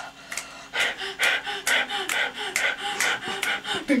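A person making rapid, rhythmic breathy vocal sounds, short voiced 'huh'-like bursts about three a second, rather than words.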